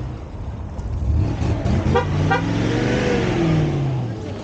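A Tatra 603 saloon's air-cooled V8 engine as the car drives past, its pitch rising and then falling away. Two short horn toots sound about two seconds in.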